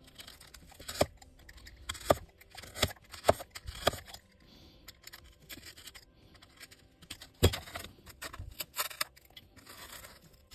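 Utility knife cutting and gouging XPS insulation foam, a scratchy crunching with a run of sharp cracks in the first half and again near the end.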